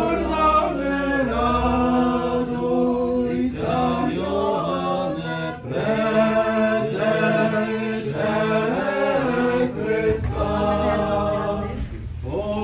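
Unaccompanied Eastern-rite liturgical chant: voices sing a slow church hymn in long held notes, phrase after phrase, with short breaks between phrases.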